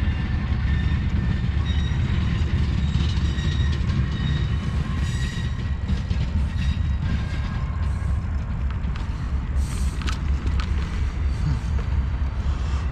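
Freight train of tank cars rolling along the track: a steady low rumble with faint, thin high-pitched tones and a few clicks over it.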